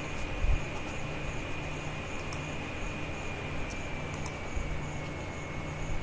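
Steady background hum and hiss of the recording room, with a thin high whine that sinks slightly in pitch and a few faint clicks.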